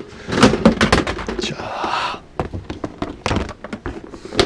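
Clear plastic storage box pulled out from a chrome wire shelf: a run of knocks and clatters of plastic against the metal rack, with a scraping slide about halfway through.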